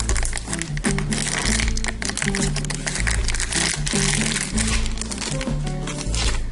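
Foil blind bag crinkling as it is torn open and a small plastic toy figure is pulled out, over background music with a steady bass line.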